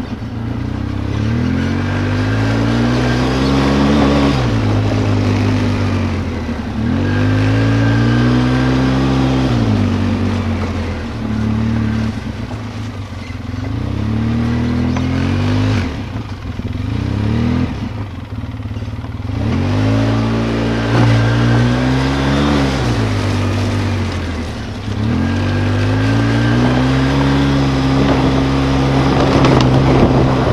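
ATV engine running as it rides a rough dirt trail, its pitch climbing and falling every few seconds as the throttle is opened and eased.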